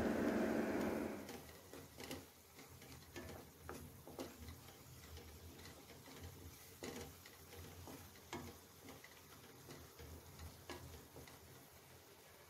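A spatula scraping and knocking against a nonstick kadai as spice masala is stirred and roasted, with irregular short clicks a second or so apart. A louder stretch of noise fills the first second and a half.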